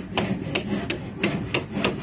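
Hammer driving nails into wooden beam formwork: a steady run of sharp knocks, about three a second.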